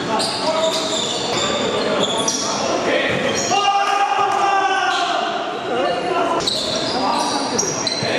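Live basketball game in a gymnasium: the ball bouncing on the court amid short high-pitched sneaker squeaks on the floor and players' shouts, all echoing in the large hall.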